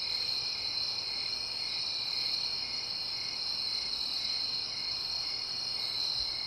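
Crickets chirping at night: a steady high-pitched trill with a faint regular pulse.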